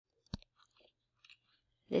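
Quiet room tone broken by one sharp click about a third of a second in, then a few faint mouth clicks before speech begins at the very end.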